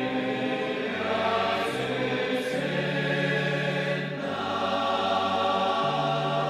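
Choir singing slowly in sustained chords, the notes changing about once a second.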